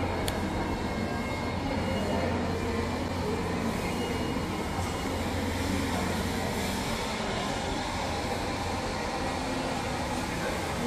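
Shopping-arcade ambience: a steady low hum under the general noise of people moving about a tiled, glass-roofed arcade. The hum fades about seven seconds in.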